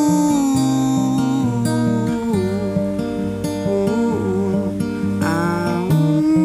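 Acoustic guitar played under a wordless sung melody from a male voice: long held notes with a slight waver, a new note sliding up into pitch near the end.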